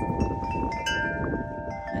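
Wind chimes ringing: several notes of different pitches struck one after another, each hanging on and overlapping the others.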